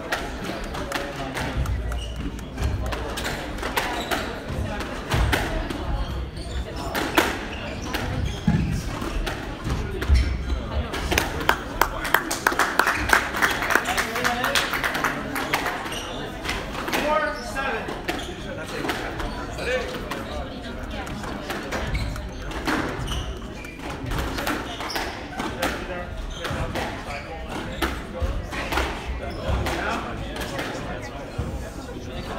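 Squash ball hits, sharp knocks off rackets, walls and floor, echoing in a large hall, with a crowded run of them a little before the middle, over the murmur of spectators talking.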